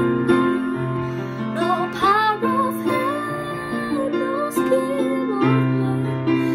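A girl singing a slow hymn melody over a steady instrumental accompaniment of sustained chords.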